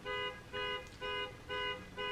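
Car alarm going off: the car's horn honking in short, even blasts, four of them about two a second.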